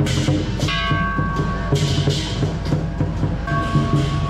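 Lion dance percussion: a big drum beating steadily and quickly, cymbals crashing over it, and a ringing metallic tone held for about a second, twice.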